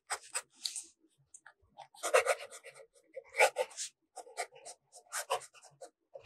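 Fountain pen nib scratching across paper as cursive is written: quick irregular strokes in short groups, with brief pauses between words.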